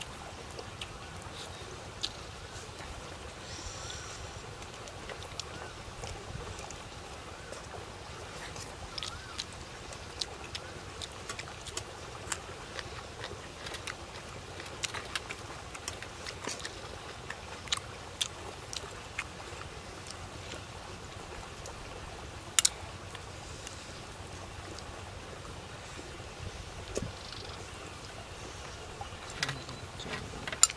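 A person eating with their fingers: scattered small clicks and smacks of chewing and of picking flesh off a grilled fish, one sharper click about two-thirds of the way in. Underneath is a steady low rumble of wind on the microphone.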